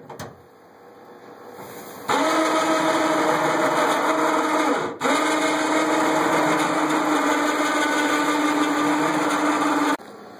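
Electric winch motor running steadily at one pitch as it hoists a lamb carcass on a gambrel. It starts about two seconds in, stops briefly about five seconds in, then runs again.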